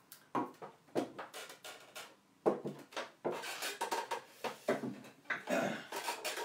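Metal food tins and concrete-filled can weights being picked up and set down on a wooden table: a run of irregular knocks and clinks.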